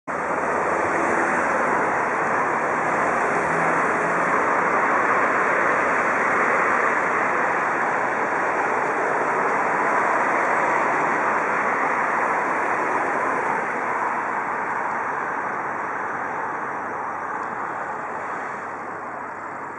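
Steady road traffic noise from a busy city avenue, an even continuous rush that fades a little over the last few seconds.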